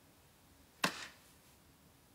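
A single sharp clack about a second in, with a short fading tail.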